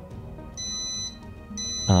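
Digital microwave oven's electronic beeper sounding its end-of-program signal as the timer runs out: a high, flat beep of about half a second, then a second beep starting near the end.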